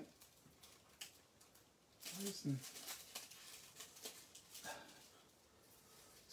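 Scissors snipping through a sheet of thin metallic craft foil, with the foil crackling and crinkling as it is handled; a faint string of short, sharp crackles.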